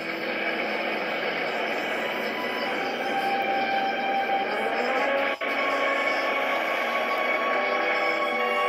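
Film soundtrack of a storm at sea: a steady rush of wind and waves under music, heard thin through a TV's speaker. There is a brief dropout about five and a half seconds in.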